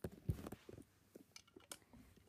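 Faint handling noise: a few light clicks and knocks as a small plastic toy wheelie bin is picked up by hand, the sharpest click at the very start.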